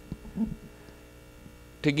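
Steady low electrical mains hum during a pause in speech, with a man's voice starting again near the end.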